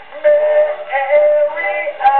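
A c. 1911 acoustic-era 78 rpm record of a comic music-hall song played on a horn gramophone: a man singing with orchestra in a run of short notes.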